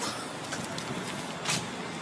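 Steady outdoor street noise with a brief rush about one and a half seconds in.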